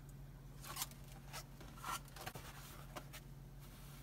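Faint rustling and scraping of thin plastic stencil sheets and a paper towel being handled and laid on a table: about five short rustles, over a steady low hum.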